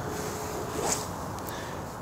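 Steady outdoor background noise with a short rustle about a second in and a faint click shortly after.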